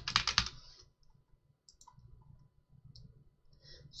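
A quick run of keystrokes on a computer keyboard in the first half second, then a few faint, scattered clicks.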